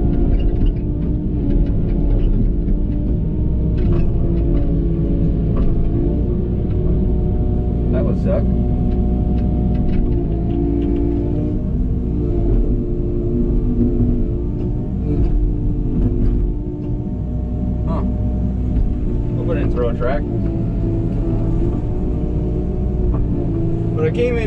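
Compact excavator's diesel engine running steadily, heard from inside the operator's cab, as the arm and bucket are worked. A few sharp knocks and clanks come through, spread across the stretch.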